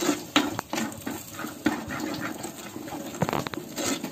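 A hand squishing and mixing pork pieces with ground spices and vinegar in a clay pot, making irregular wet squelching and splashing.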